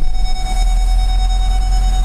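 A steady electronic warning tone comes on at once and holds, over the low idle of a 6.7 L Power Stroke V8 diesel heard inside the cab. The tone is the Ford's reverse-sensing chime as the truck goes into reverse. Held solid rather than beeping, it signals an obstacle very close behind.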